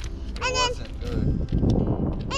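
Two short honking calls, one about half a second in and one near the end, each a single arching note.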